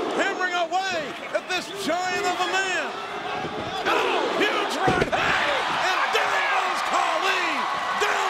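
A heavy body falling onto a wrestling ring's canvas mat, one loud thud about five seconds in, amid shouting voices.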